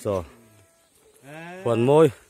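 A man's voice calling out in drawn-out shouts: a short one fading in the first moment, then a longer, louder call near the end.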